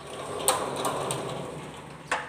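A sliding door rolling along its track: a scraping, rumbling run that starts with a click about half a second in and fades out.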